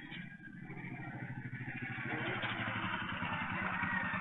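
Motorcycle engine running as it rides up and pulls in close, growing steadily louder. It is picked up by a CCTV camera's microphone, so it sounds thin and muffled.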